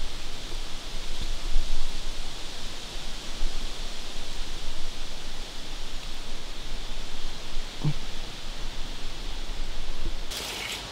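Steady rushing outdoor noise of wind and rustling leaves in woodland, with a low rumble on the microphone that rises and falls. A brief low sound comes near the end.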